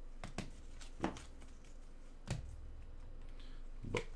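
Gloved hands handling a stack of trading cards: a few scattered light clicks and taps as the cards knock against each other, with a duller knock about two seconds in.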